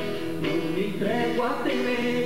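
A man singing a Brazilian sertão-style folk song to his own strummed acoustic guitar, recorded live.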